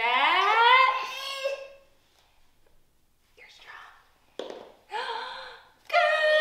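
A drawn-out, sing-song voice rising in pitch, then after a pause of more than a second, two shorter voice sounds, the calls of a 'ready, set, go' turn-taking game.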